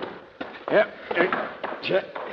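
Radio-drama dialogue: a man says a short "Yep" among a few brief words, over a faint steady rushing noise, with a light knock about half a second in.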